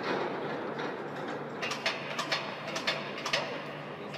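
Assembly-hall noise with a steady low hum, joined from a little under halfway through by a quick series of sharp metallic clicks and knocks as metal parts and lifting fittings are handled.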